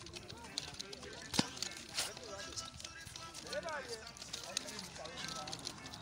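Wooden nunchaku being swung and struck, giving a sharp clack about a second and a half in and another half a second later, with smaller ticks between.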